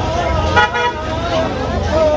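A short vehicle horn toot about half a second in, over the steady noise of a crowded market street.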